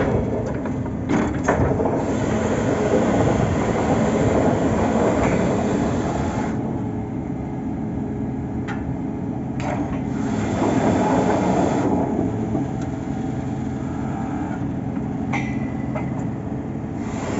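Truck-mounted borewell drilling rig running steadily under its engine and hydraulics, with a few sharp metallic knocks about a second in and again near the middle, while the rod is being worked out of the hole.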